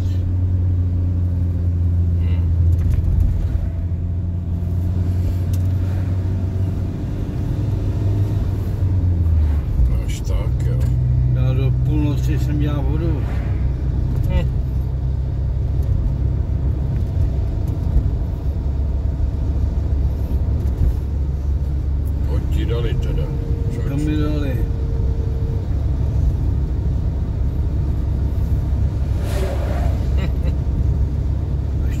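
Car engine and road noise heard from inside the cabin while driving, a steady low drone. Its note shifts about ten seconds in.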